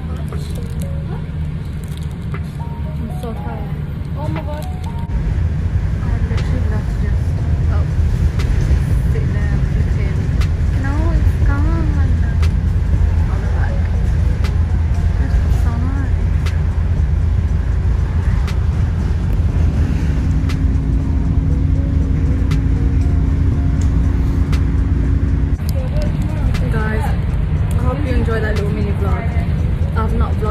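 A moving bus rumbles steadily, heard from inside the cabin, with music and voices over it. The sound gets louder from about five seconds in until near the end.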